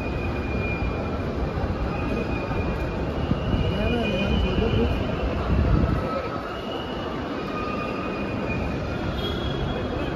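Busy outdoor curbside noise: a steady rumble of traffic with high squealing tones that come and go, and voices in the background.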